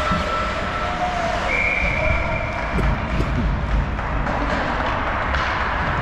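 Ice hockey game sound in an indoor rink: a steady rush of skates on the ice and arena noise, with a couple of short knocks of sticks or puck about three seconds in. Several steady high tones, each held for about a second, rise above it.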